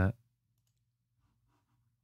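Near silence with a faint steady low hum and a few very faint computer mouse clicks.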